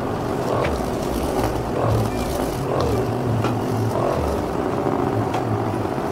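Percussion massage gun running against a person's back and shoulder, a steady low buzz whose strength wavers as the head is pressed in and moved over the body.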